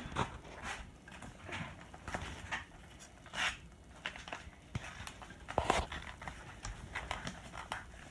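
Paper envelopes being torn open and handled, a series of short, irregular rips and rustles, the loudest about three and a half seconds in and again near six seconds.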